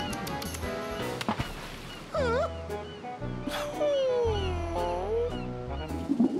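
Cartoon background music with scattered sound effects: sharp clicks, a quick dipping pitch glide about two seconds in, and a long pitch slide that falls and then rises again about four to five seconds in.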